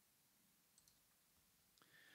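Near silence, with a couple of very faint mouse clicks, about a second in and near the end.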